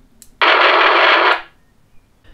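Retevis RT27 PMR446 walkie-talkie with its squelch opened by the monitor button: a faint button click, then about a second of loud, even static hiss from the radio's speaker, which cuts off when the button is released. The hiss is the open channel's noise, heard because the squelch is held open with no signal present.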